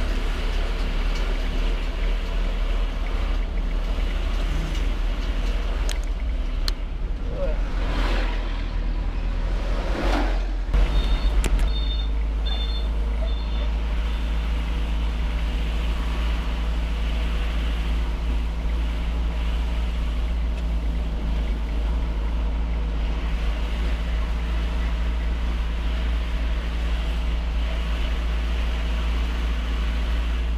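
Onboard sound of a vehicle driving along a road: a steady engine hum under heavy wind rumble on the microphone. It gets louder briefly about eleven seconds in, and a few short high beeps follow.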